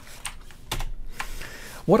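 Computer keyboard being tapped: a few separate keystrokes.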